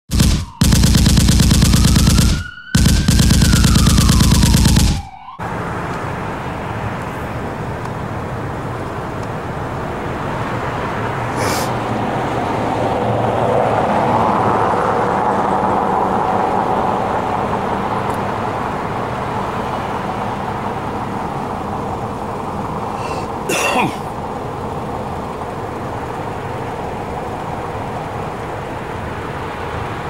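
A loud, dense intro sound effect of about five seconds, with a tone that slides up and then back down. It gives way to steady street noise from traffic and idling vehicles, swelling slightly midway, with a short sharp knock late on.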